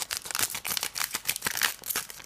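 Stiff cardboard art boards and their packaging being handled and shuffled by hand: a quick, uneven run of rustles, scrapes and light taps.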